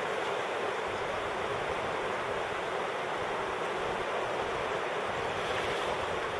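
Steady, even rushing of fast river water around rocks.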